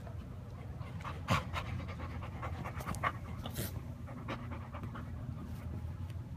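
Basset hound panting, a quick run of breaths through the middle, with one sharp knock about a second in.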